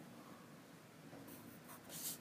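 Pencil writing on a textbook page: a few short, faint scratches in the second half.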